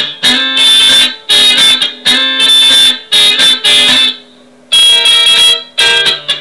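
Electric guitar playing funky rhythmic chord stabs in D, short choppy strums at roughly two a second, with a brief gap about four seconds in.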